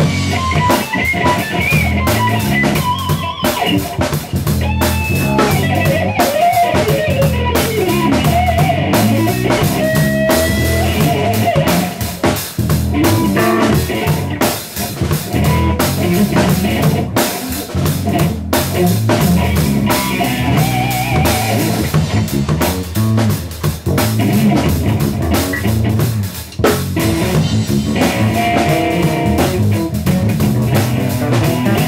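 A rock/blues band jamming: electric guitar playing lead lines with bent and sliding notes over a Fibes drum kit and an electric bass guitar.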